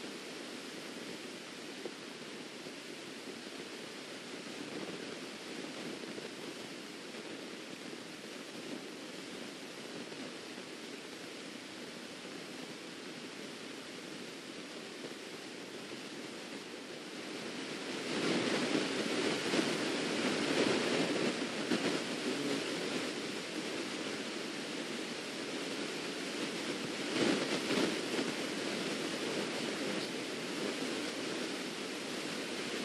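Steady rushing background noise that grows louder for several seconds past the middle, then eases off, with a brief swell again near the end.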